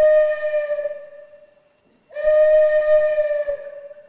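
Solo violin playing long bowed notes on the same pitch: one note held from the start and fading away about a second and a half in, a second swelling in about two seconds in and fading near the end.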